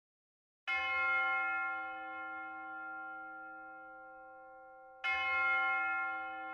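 A bell struck twice, about four seconds apart and at the same pitch. Each stroke starts suddenly, rings on and slowly fades.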